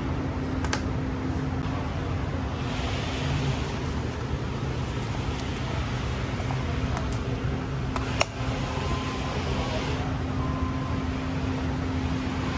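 Steady mechanical hum with a low steady tone, like a running fan. A sharp click comes just under a second in as a plastic trim clip in the engine bay is pressed into place, and a louder single click about eight seconds in.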